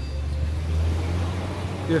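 Low rumble of a passing motor vehicle, swelling over the first second and then easing off.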